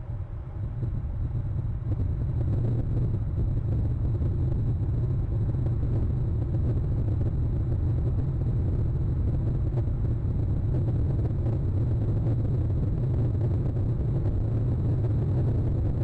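A steady low rumble that grows louder about two seconds in and then holds level.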